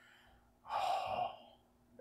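A man's single audible breath, like a sigh, lasting under a second, a short pause for thought between remarks.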